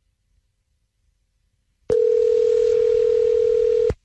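Telephone ringback tone on an outgoing call: one steady two-second ring that starts about two seconds in and cuts off just before the end, the line still ringing unanswered.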